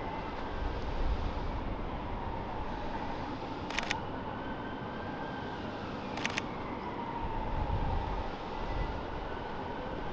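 Two camera shutter clicks from a Sony A7 III, about two and a half seconds apart. Behind them is a steady low hum of city traffic, with a faint whine slowly falling in pitch.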